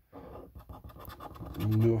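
A £1 scratch card's coating being scraped off with a small round disc, in fast repeated strokes of about eight to ten a second.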